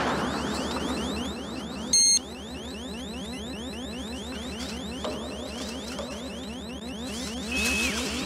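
Synthesized sci-fi alarm effect: a fast, even train of short rising electronic chirps, about seven a second, with a short loud beep about two seconds in and a held tone that drops in pitch near the end.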